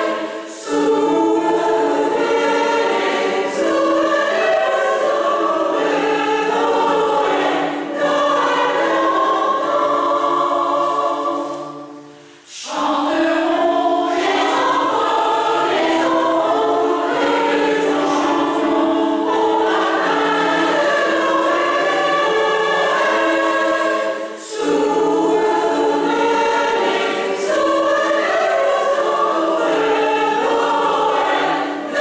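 Mixed choir of women's and men's voices singing in a church, in long held phrases with short breaks between them. About twelve seconds in, a phrase dies away almost to nothing before the singing starts again.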